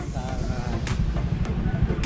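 A vehicle engine idling with a steady low rumble, and a brief click just under a second in.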